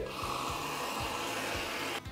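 Aerosol can of whipped cream (chantilly) spraying: a steady hiss that cuts off suddenly at the end.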